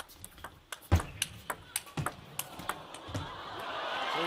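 Table tennis rally: the celluloid ball clicking off the rackets and table in quick, irregular succession, the sharpest hit about a second in. Near the end the crowd noise swells as the point finishes.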